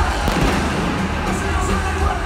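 Live Mandopop concert music over a stadium sound system, recorded from the stands, with a couple of sharp bangs near the start from the stage pyrotechnics.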